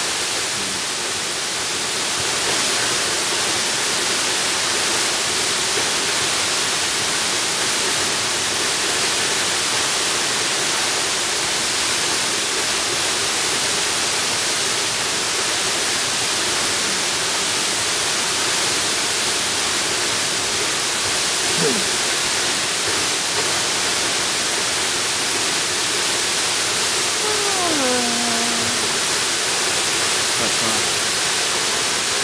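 Waterfall: a steady, even rush of falling water with no rise or fall. Twice in the second half, faint short calls slide down in pitch over the rush.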